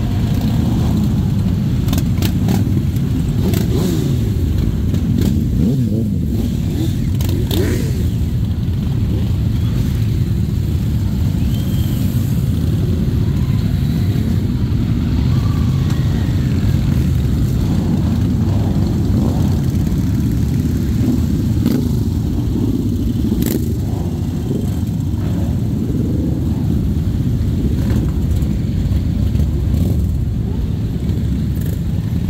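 A dense column of motorcycles (sport bikes, cruisers and scooters) riding slowly past in a mass ride-out. Many engines make a steady low rumble, with individual bikes revving up and down as they pass. A few short sharp cracks come in the first eight seconds and one more about three quarters of the way through.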